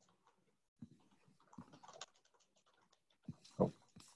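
Quiet video-call audio with faint, scattered short noises, then a brief spoken "oh" near the end.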